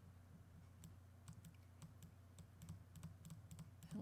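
Near silence: faint, irregular clicking at a computer while a brush tool is worked, over a low steady hum.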